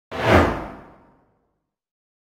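A single whoosh sound effect for an animated logo reveal. It swells suddenly, peaks within a fraction of a second, then fades out over about a second.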